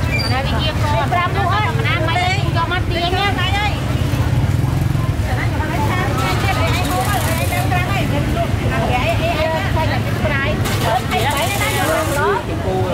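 Voices talking in a busy market over a steady low rumble of engines and traffic.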